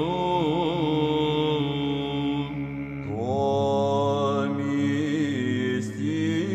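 Byzantine chant in the sixth tone sung by a vocal ensemble: an ornamented melody line over a sustained ison drone. The line dips briefly about halfway through, then a new phrase begins as the drone beneath moves to a new note.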